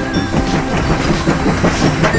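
Motorized TrackMaster toy diesel engine running along plastic track, a rapid rattling clatter from its motor and wheels.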